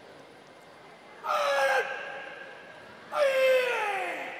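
A karate athlete shouting two loud calls about two seconds apart, each falling in pitch, the second longer: the kata announcement made before the performance begins.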